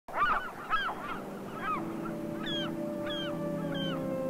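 Gulls calling, a series of short arching cries that rise and fall in pitch, about two a second at first and sparser later. Steady sustained low notes of music fade in under the calls about halfway through.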